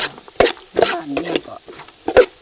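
Metal ladle stirring and scraping ingredients frying in an aluminium pot, with two sharp clinks of the ladle against the pot in the first second and a light sizzle underneath.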